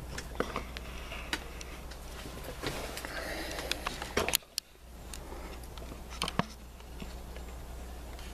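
Scattered, irregular light ticks and taps of walnut shell fragments, broken up by a squirrel in the tree above, falling onto and hitting a large leaf, over a steady low hum.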